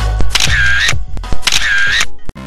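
Electronic background music with two camera-shutter sound effects, each about half a second long and about a second apart.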